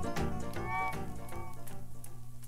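Closing instrumental bars of a mid-1960s country band recording played from a mono vinyl LP, fading out, with a short bending, sliding note about a second in and a steady low hum beneath.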